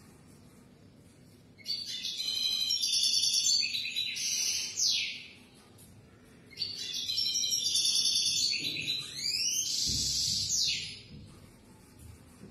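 European goldfinch singing: two phrases of rapid, high twittering, the first starting about two seconds in and the second about seven seconds in, each ending in quick downward sweeps.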